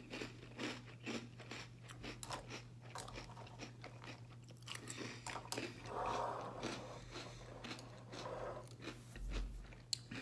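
Crunchy breakfast cereal being chewed: many small crisp crunches of Cinnamon Toast Crunch squares, churro pieces and vanilla Chex in milk, spoonful after spoonful. Near the end there is a single knock, the bowl being set down on the table.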